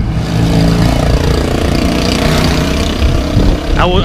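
A motor vehicle driving past close by, its engine and road noise swelling to a peak about halfway through, over a steady low rumble.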